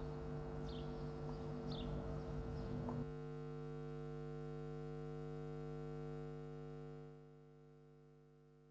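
Steady low hum of several held tones under faint hiss, with two short high chirps in the first three seconds. About three seconds in the hiss cuts off, leaving the hum alone until it fades out near the end.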